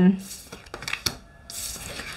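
Tarot cards being handled: a few light taps, then a soft papery rustle near the end as a card is drawn from the deck.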